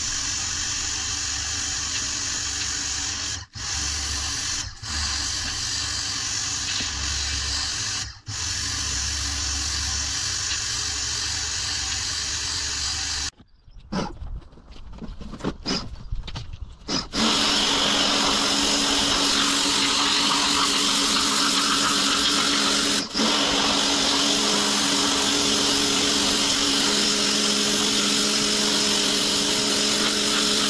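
Pressure washer jet-washing concrete paving slabs: the pump runs steadily and the jet hisses on the stone. It cuts out briefly three times in the first half, drops to a few scattered clicks for a few seconds in the middle, then runs steadily again, a little louder.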